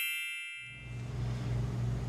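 A bell-like notification chime, a sound effect, fading out over the first half second. About half a second in, a low steady hum and faint room noise take over.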